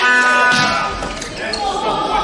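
Volleyball struck on the serve and receive, with crowd voices and chatter in a large sports hall; a held pitched tone stops about half a second in.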